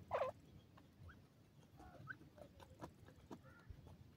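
Grey francolins calling: one short, loud call with a dipping-then-rising pitch right at the start, followed by a few faint soft chirps amid small clicks and rustles.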